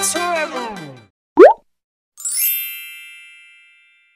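Intro-graphic sound effects: the intro music slides down in pitch and dies away, then a short, loud rising 'bloop' pop about a second and a half in, followed by a bright bell-like ding that rings out and fades over about a second and a half.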